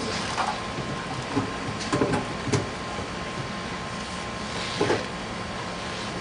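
Removable parts of an undercounter ice machine being fitted back into its food zone: a few separate knocks and clicks, two close together about two seconds in and another near the end, over a steady background hum.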